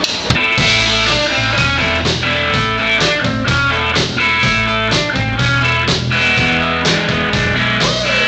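Rock band playing live: electric guitar, bass and drum kit. The song kicks in with a hit at the very start and then runs at a steady beat.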